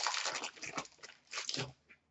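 Hockey card pack wrapper crinkling and rustling in irregular bursts as the cards are pulled out and handled, busiest in the first second, with a couple of shorter rustles later.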